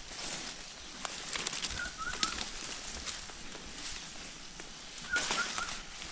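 A bird calling a quick phrase of three short notes, twice, about three seconds apart, over the light crunch and rustle of footsteps through undergrowth.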